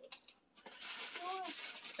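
Rustling and crinkling of plastic gift packaging being handled, starting about half a second in, with a brief faint voice in the middle.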